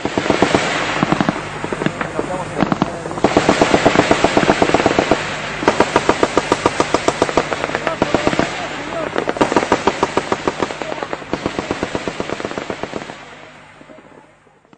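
Battle sound effect: runs of automatic machine-gun fire over a dense crackle of shooting, with voices mixed in and a low steady hum underneath. It starts suddenly and fades out near the end.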